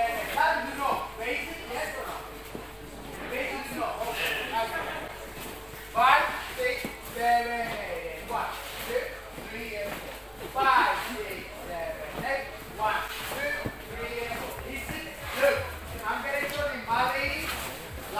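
People talking, voices coming and going in bursts, over a faint steady hum.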